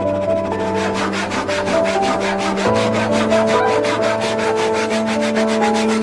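Fine-tooth hand saw cutting through a small block of scrap wood in quick, evenly spaced strokes, over background music with long held notes.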